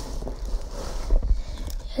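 Fingers working the metal latch of a hard guitar case: a few light clicks and rattles, the sharpest about a second in, over low rumbling handling noise from the phone held close.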